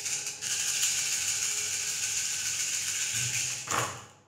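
Cowrie shells shaken and rattled together in cupped hands, a dense steady rattle for about three seconds, ending with a short louder clatter as they are cast onto the cloth-covered table.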